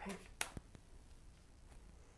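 Hands laying a tarot card down on a table and squaring the spread: a sharp tap about half a second in, a lighter tap just after, then a few faint ticks.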